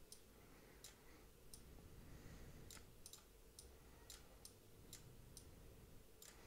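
Faint computer mouse clicks, about ten of them spaced irregularly, over near-silent room tone.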